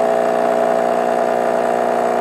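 Krups Espresseria superautomatic espresso machine brewing a shot, its pump running with a steady, even hum as espresso pours from the twin spouts.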